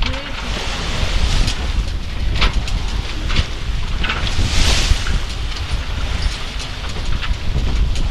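Wind buffeting the microphone on a sailboat under way, with water rushing and splashing along the hull; a louder hiss of spray about halfway through.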